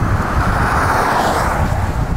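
Wind rushing over the microphone while riding an e-bike at about 32 km/h, a steady low rumble with a louder rush of noise that swells and fades in the middle. The e-bike's motor itself is very quiet and does not stand out.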